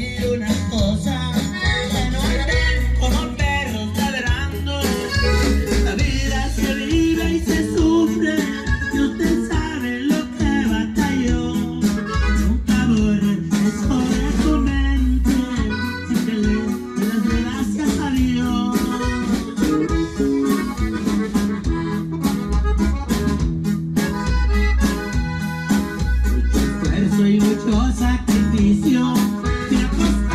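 Live norteño music: a button accordion leads over guitar and drum kit with a steady bass beat, and a man sings.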